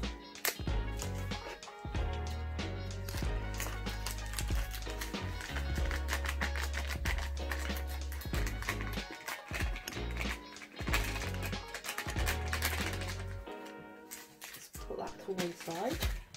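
Upbeat electronic dance background music with a steady beat and deep bass; the bass drops out near the end.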